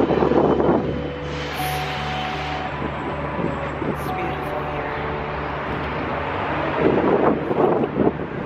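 Outdoor ambience: a steady low mechanical hum, with wind buffeting the microphone at the start and again near the end.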